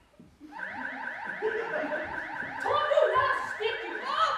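An electronic alarm-like tone starts about half a second in: a steady high tone with quick rising sweeps repeating several times a second. Voices join over it in the second half.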